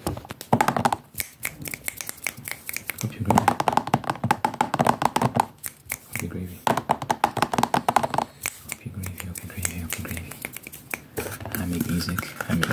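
Fast, aggressive ASMR trigger sounds close to the microphone: rapid mouth sounds and hand movements, a dense stream of quick clicks and taps with short wordless vocal stretches in between.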